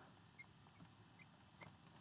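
Near silence, with a few faint squeaks of a marker writing on a glass lightboard.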